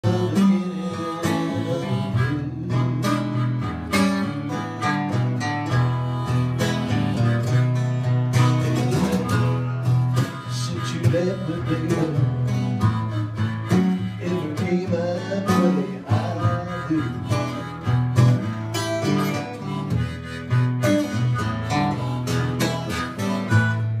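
Acoustic blues played live: an acoustic guitar strumming a steady rhythm with a harmonica wailing over it in wavering, bending notes.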